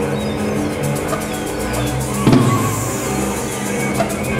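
A live chamber ensemble playing an instrumental passage: bowed cello and double bass hold low notes under guitar and other instruments. A single loud percussion hit with a ringing tail comes a little past halfway.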